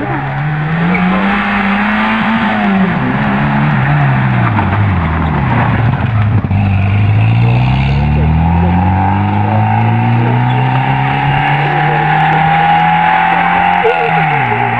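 Small rally car's engine revving hard under acceleration. Its pitch rises, falls away from about three to six seconds in as the car slows, then climbs steadily for the rest as it accelerates away down the stage.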